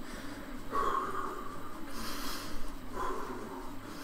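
A man breathing heavily from exertion while pedalling an exercise bike, with a few loud, noisy breaths through the nose and mouth.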